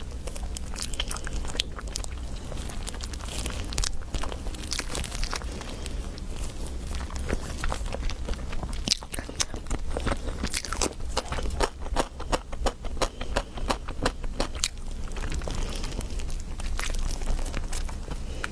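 Close-miked mouth sounds of a person biting and chewing food: many short wet clicks and crunches, coming thickest around the middle. A steady low hum runs underneath.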